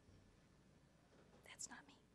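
Near silence: faint room tone, with a brief faint whispered voice about one and a half seconds in.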